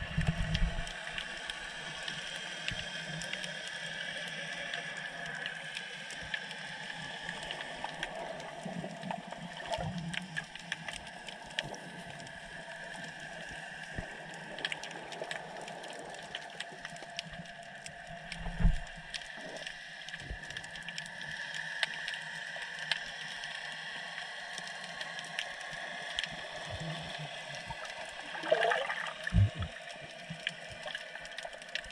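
Underwater sound of the sea picked up by a submerged camera: a steady hiss flecked with faint crackling clicks. A couple of dull thumps stand out, and a short rising gurgle comes near the end.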